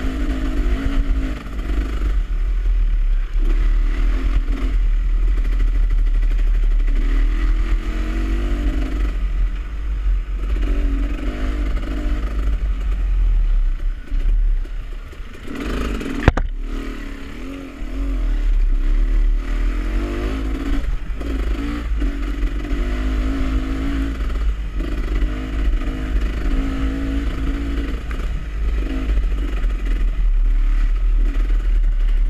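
Dirt bike engine revving up and down as it is ridden over a rough trail, with wind and vibration rumbling on the microphone. Past the halfway point the engine drops to a lower running for a few seconds, broken by one sharp knock, then picks up again.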